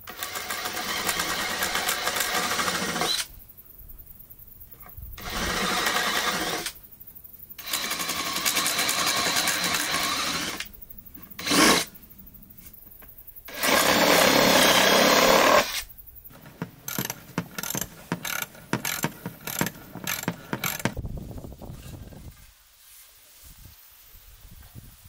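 Cordless drill running in several spells of one to three seconds each, boring into a softwood board, with a short sharp burst between them. A few seconds of light clicking and clatter follow.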